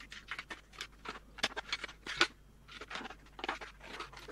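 Scissors snipping along the edge of a thin clear vacuum-formed plastic canopy, trimming it down to a marked line in a quick, irregular run of short cuts.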